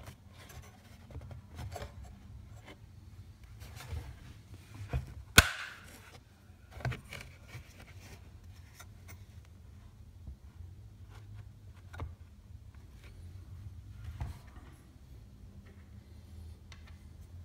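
Black plastic housing parts of a Beurer humidifier being handled and fitted back together: scattered light clicks and rubbing, with one sharp click about five seconds in.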